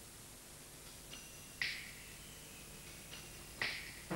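Two short, high electronic pings about two seconds apart, each preceded by a faint thin tone, over low tape hiss: the quiet opening of a synthesized title theme.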